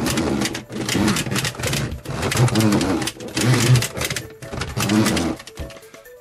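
Plastic toy robot (budget Samurai Ha-oh) pushed along a table on its rubber-tyred foot rollers: the gear train inside clicks and rattles, driving the linked claw and head motion. It goes in several pushes, with short breaks about every second.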